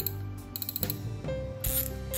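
Daiwa Luvias (2012) spinning reel's drag clicking in quick runs as the spool is turned by hand; the click is very loud, which is typical of the 2012 models.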